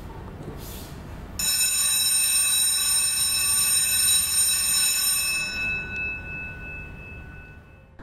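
A low dull rumble, then about a second and a half in a single bright bell-like chime strikes. Its many high ringing tones fade slowly over the next six seconds; this is title-sequence sound design.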